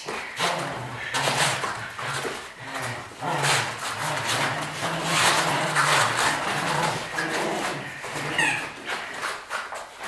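Two dogs making excited noises as they jump and scramble about on a rug, with a low, wavering sound running under most of it.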